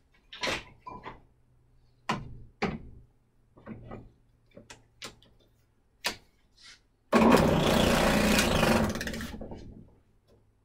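Sharp clicks and knocks of a trigger bar clamp being squeezed tight and handled on a sander's table, spaced unevenly over several seconds. Then a loud, steady rushing noise starts suddenly, holds for about two seconds and trails off.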